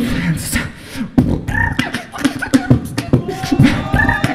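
Solo beatboxing into a handheld microphone: a fast stream of vocal kick, snare and hi-hat sounds, with a short break about a second in and a few brief pitched vocal tones mixed into the rhythm.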